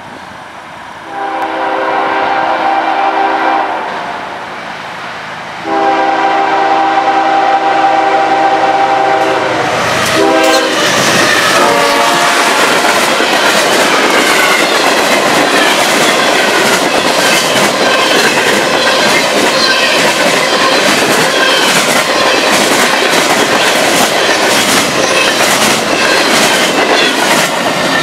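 CSX freight train passing close by: the locomotive's air horn sounds two long blasts and then a short one about ten seconds in, its pitch dropping as the locomotive goes past. Then the freight cars roll by, their wheels clicking steadily over the rail joints.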